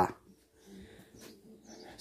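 Faint dog sounds: a few short, quiet noises during a pause in the talk.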